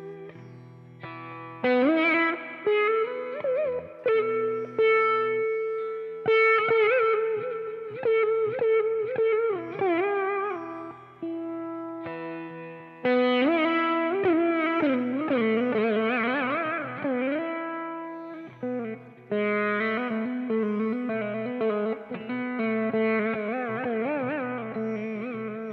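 Saraswati veena playing in raga Nata: plucked notes that ring and fade, with sliding, wavering pitch bends (gamakas) over a steady low drone, in phrases with short pauses between them.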